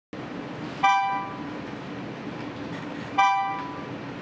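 Two electronic beep-chimes from the virtual-reality task software, about two and a half seconds apart, each starting sharply and fading over about half a second. A steady low hum runs underneath.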